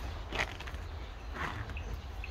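Footsteps on a paved path, two steps about a second apart, with a short bird chirp near the end over a steady low rumble.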